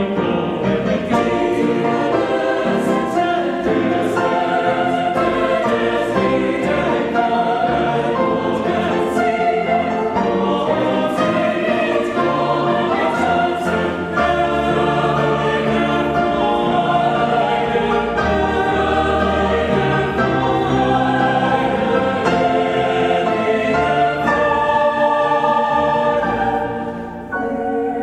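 Mixed university choir singing a classical choral work, a full sustained sound of many voices with no break.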